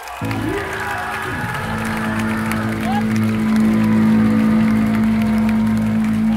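Amplified electric guitars and bass of a live hardcore band holding one low, sustained chord that rings on and swells louder, with a few shouts from the crowd over it.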